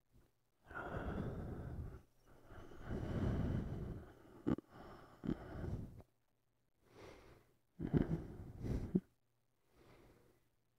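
A man's slow, deep breaths and sighs close to the microphone, about five of them with short pauses between, as he wakes drowsily. There are two small clicks near the middle.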